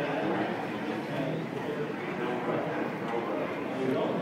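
Crowd chatter: many voices talking at once, a steady murmur with no single voice standing out.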